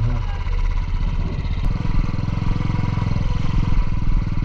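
Motorcycle engine running steadily at low speed as the bike rides along a dirt track, an even putter of firing pulses.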